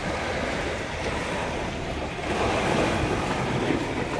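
Small sea waves washing up on a sandy beach, a steady surf noise, with wind buffeting the microphone.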